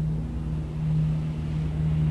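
A low steady hum with a deep rumble beneath it, swelling and easing slightly in level.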